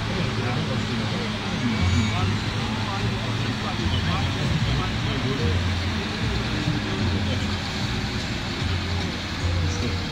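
Mercedes-Benz MB Trac diesel engine running hard under full load as the tractor drags a pulling sled. It is mixed with crowd voices, a public-address announcer and music over loudspeakers.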